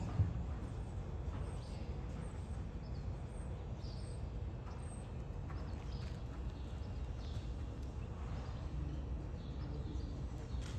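Dressage horse trotting on soft sand arena footing, the hoofbeats dull and faint over a steady low rumble, with a few faint bird chirps.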